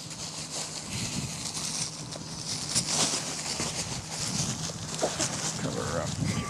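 Cloth blanket rustling as it is wrapped around a child, over a steady low hum, with faint voices now and then.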